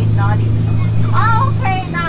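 A steady low hum from a tour boat's motor, under a person's voice talking.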